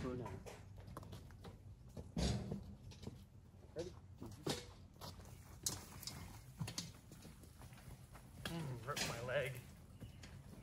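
Wheelbarrows loaded with mulch being pushed and tipped: scattered knocks and rattles, the loudest about two seconds in, with brief voices, strongest near the end.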